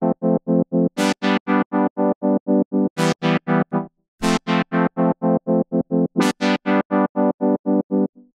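A simple synthesizer chord chopped into an even stream of short pulses, about five a second, by the S-Pulser rhythmic gate plugin with its Offset pushed slightly off the beat. The pulses stop for a moment just before four seconds in, then start again.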